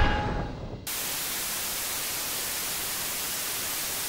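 The tail of the background music fades out, then about a second in a steady static hiss starts suddenly and holds at an even level.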